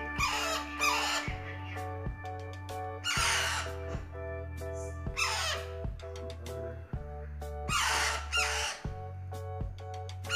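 Background music with a steady beat, over which baby parrots give harsh, rasping squawks in short bursts about every two seconds, the begging calls of chicks being hand-fed from a spoon.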